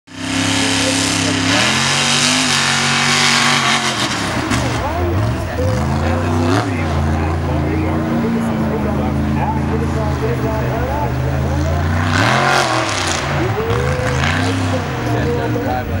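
Lifted mud truck's engine revving hard on a sand track, its pitch climbing and dropping again and again as the driver works the throttle.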